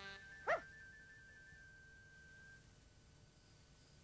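A single short dog bark about half a second in, over the last held note of music fading away.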